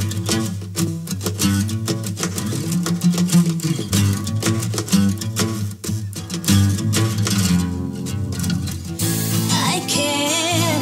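Song intro with a strummed acoustic guitar over a steady low bass part; a singing voice comes in near the end.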